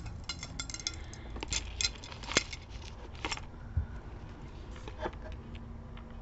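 A silver-tone metal chain necklace with two crescent plates, clinking and jangling as it is handled and hung on a display bust. There is a flurry of light metallic clicks over the first three seconds or so, then a few scattered ones.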